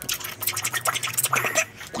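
Scratchy rustling of movement close to the microphone, a dense run of small crackles and scrapes, with a short bit of voice about one and a half seconds in.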